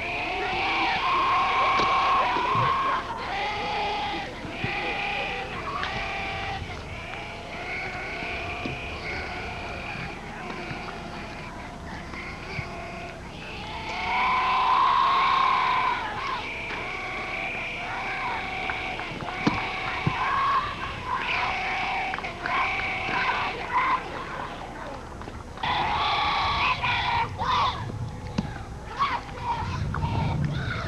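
Young players' voices chanting a sing-song cheer together, each syllable drawn out for about a second and repeated over and over, swelling louder a couple of times.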